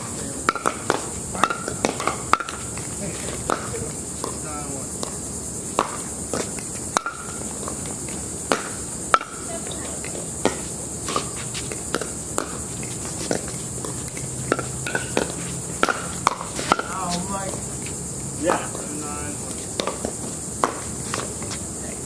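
Pickleball paddles hitting a hard plastic ball in a doubles rally: sharp pops at irregular intervals, about one every second or less, over a steady high hiss.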